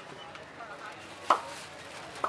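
A single sharp knock a little over a second in: a metal spatula or tongs striking the steel counter as fried puris are handled. Beneath it is a faint murmur of voices.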